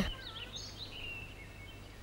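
Quiet background with a few faint, short bird-like chirps in the first second or so over a low, steady hum.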